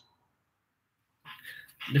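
Dead silence for just over a second, then a brief faint sound and the start of a voice near the end.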